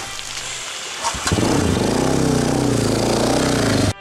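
Dirt bike engine running as the bike rides through a shallow creek crossing, louder from about a second in and holding steady, then cut off suddenly near the end.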